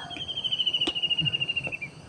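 An insect's high-pitched trill, a fast even pulsing that sags slightly in pitch and stops shortly before the end. A single faint click about a second in.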